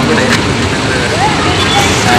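Steady roadside traffic noise, with a man's voice speaking briefly in the second half.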